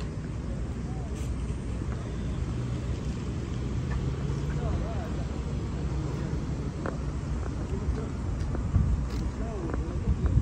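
Street traffic: a low, steady rumble of cars with an engine hum swelling and fading in the middle, and faint voices of passers-by.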